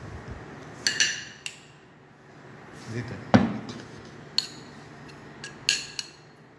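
A metal spoon clinks against a glass jar and a plate as thick tomato sauce is scooped out and spread. There are a few sharp, ringing clinks, the loudest about a second in and near the end.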